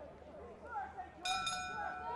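Boxing ring bell rung about a second in and ringing on, signalling the start of round four.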